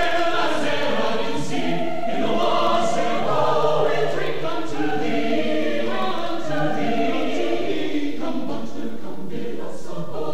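Chamber choir of mixed men's and women's voices singing a sustained passage in harmony.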